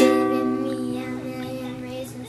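Ukulele strummed once, the chord starting sharply and ringing on, slowly fading.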